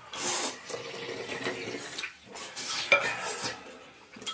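Close-up eating sounds: wet slurping, sucking and chewing as pork rib meat is bitten and sucked off the bone over a bowl of soup, with a sharp click of chopsticks or lips about three seconds in.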